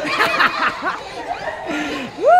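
A group of children and teenagers laughing together, several voices overlapping in short bursts of laughter and excited calls.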